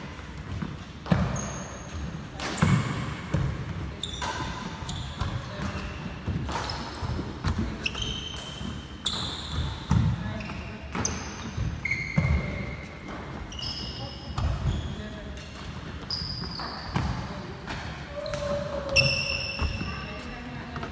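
Running footsteps and lunges on a wooden indoor court during badminton footwork drills: irregular thuds of feet landing, with frequent short high squeaks of court shoes on the floor.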